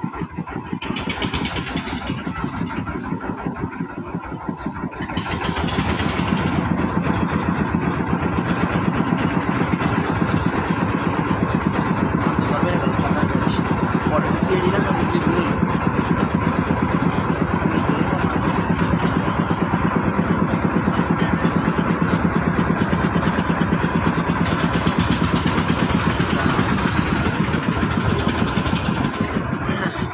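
Diesel engine of a wooden river launch running with a fast, steady chug, growing louder about five seconds in as the boat gets under way and heads out from the jetty.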